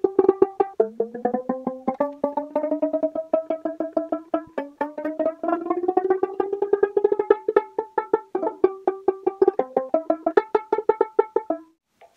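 Kmise banjolele (banjo ukulele) strings plucked over and over in quick succession during tuning, their pitches sliding upward as the tuning pegs are turned. The passage is fast-forwarded.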